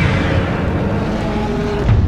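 A deep, dense sound-design rumble for a logo reveal, swelling again just before the end.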